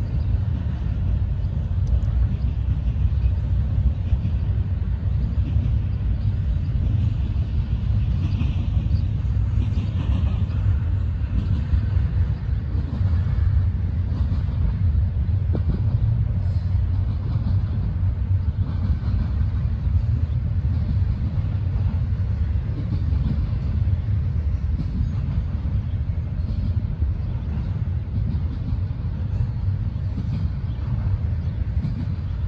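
Double-stack intermodal freight train rolling past at a distance: a steady low rumble of the container cars on the rails.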